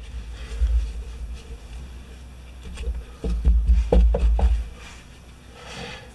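Handling sounds of an aluminium pressure-washer pump being wiped with a rag and moved on a metal workbench: low bumps about half a second in and again in the second half, with a few light clicks.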